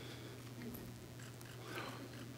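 A quiet pause in a room: a steady low electrical hum with a few faint, brief small noises.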